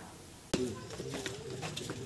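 A fading pause, then after a sudden cut faint ambient sound with a low, wavering bird call.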